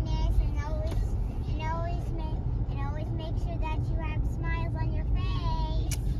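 A child's high-pitched voice in short, sing-song phrases over the steady low rumble of car road noise heard inside the cabin.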